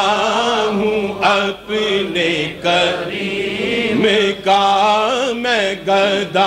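Unaccompanied male voice chanting an Urdu naat in long, wavering melodic lines with brief breaks, over a steady low hum.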